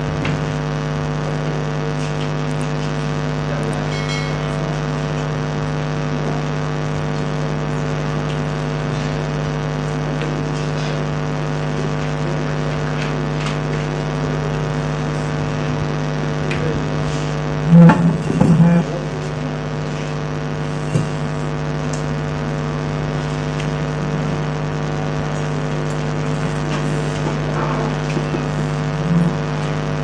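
Steady electrical hum with a stack of even overtones through the microphone and sound system, unchanging throughout. A brief louder knock-like disturbance breaks in a little past the middle.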